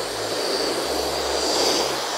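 Handheld hair dryer running steadily, a rushing blast of air with a thin, steady high whine on top, as it blow-dries hair at the roots.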